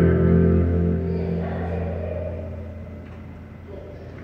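Double-neck electric guitar's last chord ringing out through the amplifier and slowly dying away at the end of a song.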